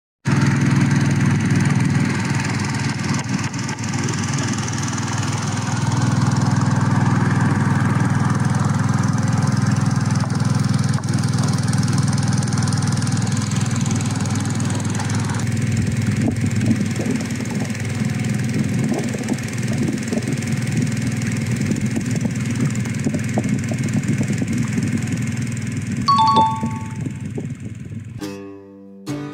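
Small wooden riverboat's engine running steadily under way, with a steady hiss of wind and water over it. Two short high tones sound briefly about two seconds before the end.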